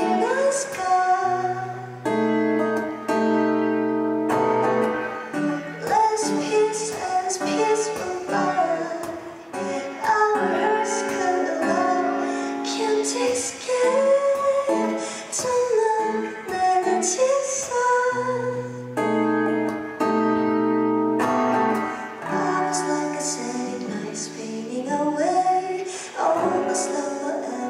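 A woman singing a song live into a microphone while accompanying herself on a Crafter acoustic guitar, strumming and holding chords under the melody.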